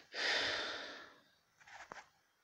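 A person's sigh: one breathy exhale that fades out over about a second, followed by a couple of faint clicks near the end.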